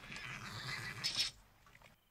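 A horse vocalizing for about a second and a half, then falling quiet.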